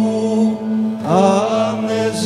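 Cretan traditional singing: one low drone note held steady throughout, with a male voice coming in about a second in and sliding up into an ornamented melodic line over it.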